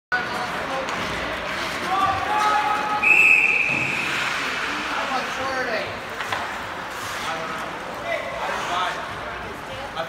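Ice hockey rink sound of spectators' voices and sharp stick and puck knocks, with a referee's whistle blown once, a short high steady blast about three seconds in that stops play.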